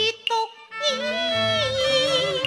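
A woman singing a Cantonese opera aria with instrumental accompaniment. After a short break about half a second in, she holds one long wavering note that falls slightly before the end.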